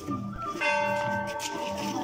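A bell struck once about half a second in, its tones ringing on and fading slowly, over background music with a steady beat.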